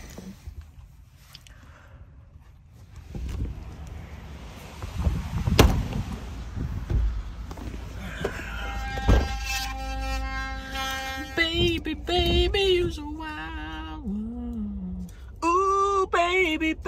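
Two sharp thunks about three and a half seconds apart over a low rumble, then a man singing in a pickup's cab from about halfway, his voice gliding up and down in short phrases.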